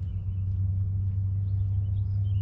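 Steady low rumble of unclear source, with faint birdsong over it.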